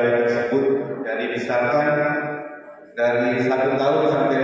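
A man speaking into a microphone over a public-address system, his amplified voice echoing in the hall, with a short pause between about two and a half and three seconds in.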